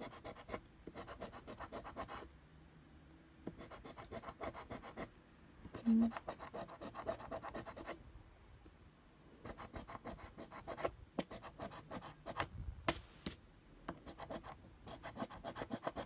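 A large coin scraping the coating off a scratch-off lottery ticket on a tabletop: runs of fast rasping strokes in bursts with short pauses between. A few sharper clicks come about three-quarters of the way through.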